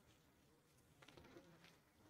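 Near silence: faint room tone, with a few faint ticks about a second in.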